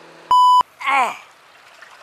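A short, loud electronic bleep, one steady tone lasting about a third of a second, of the kind laid over a swear word, followed by a brief vocal sound falling in pitch.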